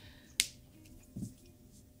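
A single sharp click about half a second in, against quiet room tone.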